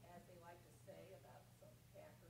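Faint, distant speech, a person talking well away from the microphone, over a steady low hum.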